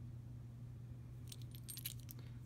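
Small metal charms clinking together in the hand: a short run of light jingles starting a little over halfway through.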